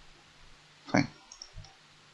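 A few faint computer-mouse clicks, with a man saying the single word "fine" about a second in.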